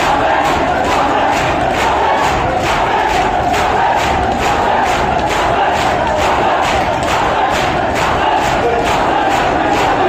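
A large crowd of mourners doing matam: hands slapping chests in unison about twice a second, over loud massed chanting voices.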